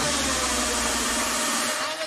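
A UK hardcore DJ set goes into a breakdown. The pounding kick drum drops out, leaving a loud, sustained noise wash with a faint held tone, and the bass cuts out near the end.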